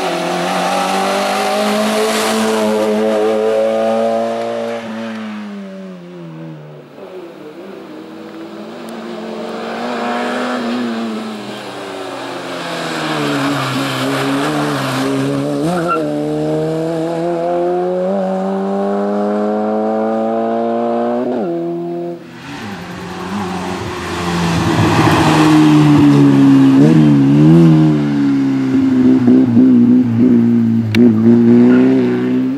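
Race car engine revving hard through a cone slalom, its pitch climbing and falling again and again as the driver accelerates, lifts off and changes gear between the cones, with tyre squeal. About two-thirds of the way through, the sound drops briefly and comes back louder and closer.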